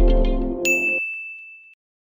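Intro music with a deep bass note that ends about a second in, overlapped by a single high notification-bell ding sound effect that rings on and fades out.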